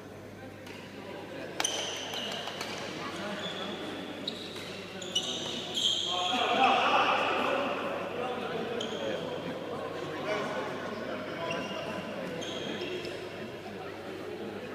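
Echoing sports-hall background of people talking, with a few sharp knocks and a louder stretch about six seconds in.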